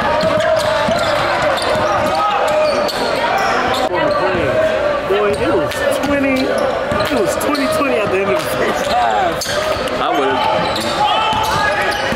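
Live sound of a basketball game in a large gym: many overlapping, indistinct voices from the crowd and players, with the ball bouncing on the hardwood as short knocks.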